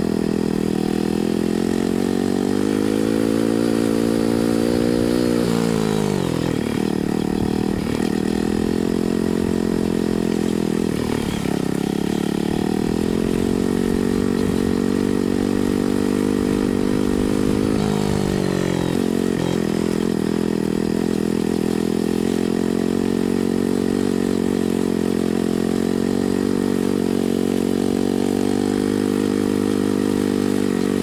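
Motorcycle engine running under way. Its pitch drops sharply about six seconds in, again around eleven seconds and around nineteen seconds, and climbs back gradually after each drop.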